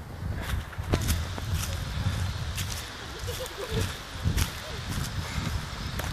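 Footsteps of racers approaching on a gravel forest track, with a few irregular sharp crunches and clicks, over a steady low rumble on the microphone and faint distant voices.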